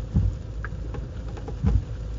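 A steady low hum, with two soft low thumps: one just after the start and one near the end.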